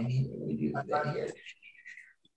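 A low voice murmuring wordlessly over a video-call audio feed, followed near the end by a faint, brief high wavering tone.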